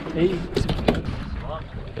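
A few sharp knocks about half a second to a second in, from a freshly landed small dolphinfish slapping on the boat deck, among short exclamations and wind on the microphone.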